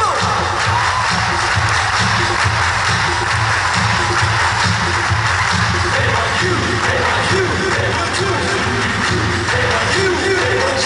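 Live pop band music played loud through a concert sound system, steady throughout.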